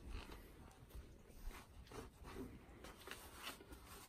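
Faint rustling and rubbing of a cloth rag wiping a metal clutch cone, cleaning off lapping compound, with a few soft brief handling sounds.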